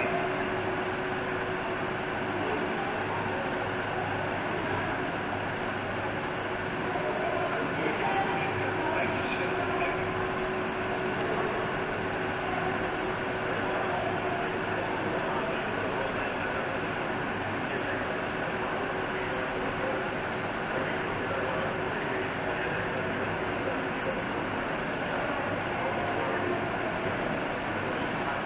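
Steady background room noise with a faint, constant hum.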